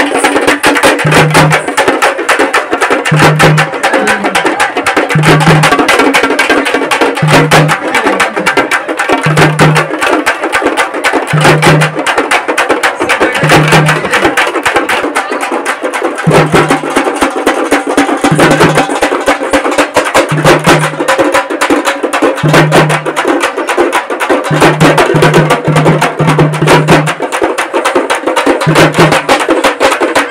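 Loud, fast devotional percussion: dense, rapid beating of drums and struck metal gongs, with a short deep note recurring about every two seconds.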